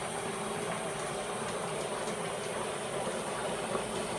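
Dry ice bubbling in a sink of water under a running hot tap, a steady rushing, bubbling noise as the CO2 sublimates into fog.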